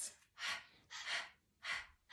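Voices repeating the breathy /h/ letter sound, three short unvoiced puffs of air ("h, h, h") about half a second apart, as in a phonics drill.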